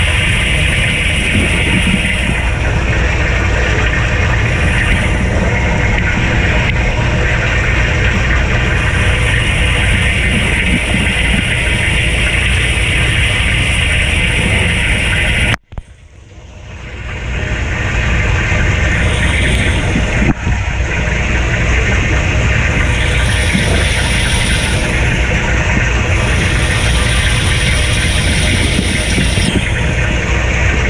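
Kenmore 587.14132102 dishwasher's upper wash arm spraying water, a steady loud rush heard from inside the tub. About halfway through, the spray sound cuts out suddenly, then builds back up over a couple of seconds. There is a single short tick soon after.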